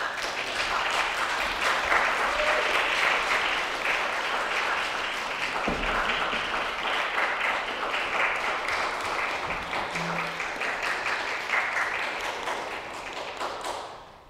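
Audience applauding steadily as the performers come onto the stage, starting suddenly and stopping near the end.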